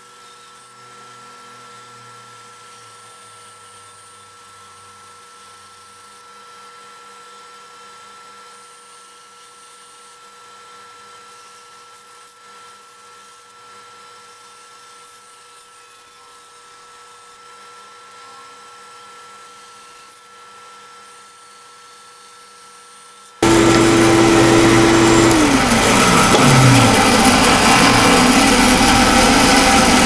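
Small benchtop bandsaw cutting a wood carving blank. For most of the time it is faint, a steady hum with a thin high whine. About 23 seconds in the sound jumps much louder, and a few seconds later a tone falls in pitch.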